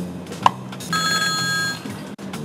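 Desk telephone ringing: one electronic ring of just under a second, starting about a second in, over soft background music. A sharp click comes just before it.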